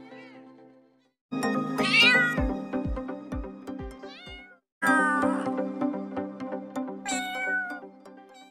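Domestic cat meowing several times in short calls that bend up and down in pitch, over background music with a steady beat. The sound drops out briefly about a second in.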